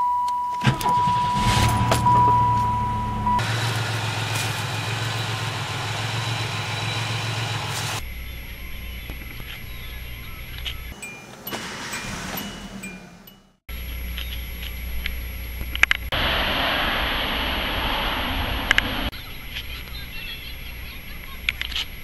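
Car engines starting and idling in a series of short clips cut together, heard from inside the cabin. A steady beep-like tone sounds over the first few seconds as the first engine catches, and the sound changes abruptly at each cut.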